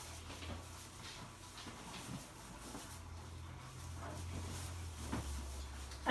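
Faint rustling and crinkling of a tangled tinsel garland being pulled through the hands and draped on an artificial Christmas tree, over a low steady hum.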